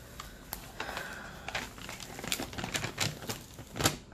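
Clear plastic cover film on a diamond-painting canvas crinkling and crackling as a hand smooths it down, pressing the adhesive back after air pockets were popped. It is a run of irregular small clicks, with a louder one near the end.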